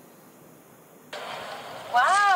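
Faint steady hiss, then about a second in an abrupt switch to steady outdoor street background noise with traffic.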